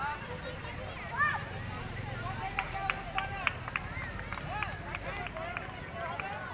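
Voices of children and adults chattering and calling across an open sports ground. In the middle comes a quick run of sharp clicks.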